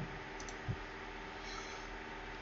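A few faint clicks and soft knocks, two of them about 0.7 s apart, over a steady low hum of room noise.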